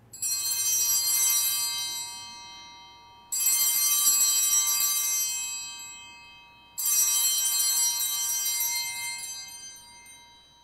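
Altar bells rung three times, about three and a half seconds apart, each ring a bright shimmer of high tones that fades away. They mark the elevation of the chalice at the consecration of the Mass.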